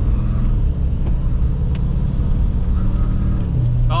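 Nissan Titan XD's 5.0 L Cummins V8 turbo-diesel heard from inside the cab, pulling under acceleration with its note slowly climbing. About three and a half seconds in, the pitch drops sharply as the transmission upshifts, a shift the driver finds much smoother on fresh transmission fluid.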